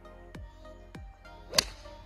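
A golf club striking the ball on a full swing: one sharp crack about one and a half seconds in, the loudest sound. Background music with a steady beat plays throughout.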